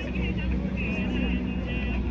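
Street background: a steady low rumble of passing traffic, with voices and faint music over it.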